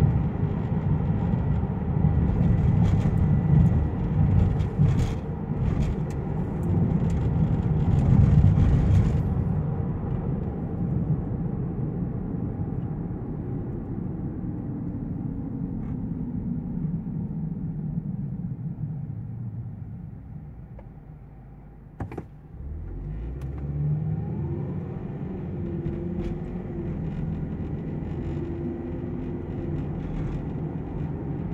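Kia car heard from inside the cabin: engine and road rumble at speed, then fading as the car slows, with the engine note falling away. A sharp click about two-thirds of the way through, then the engine note climbs again as the car pulls away and settles.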